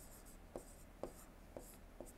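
Faint ticks and light scratching of a stylus writing by hand on an interactive display screen, a few small taps about half a second apart.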